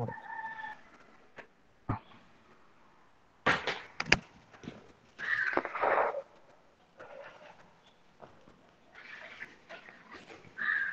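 A few short animal calls, each under a second, with the longest about five to six seconds in; a brief steady tone sounds at the very start.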